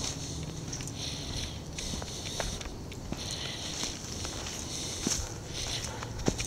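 Footsteps of a person walking on a dirt track scattered with leaves and twigs, an uneven series of light steps and clicks.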